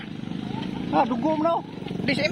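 A person's voice talking briefly about a second in, over a steady low mechanical hum.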